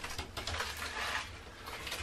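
Faint handling noise: light rustling with a few small clicks and taps as craft items are picked up and moved.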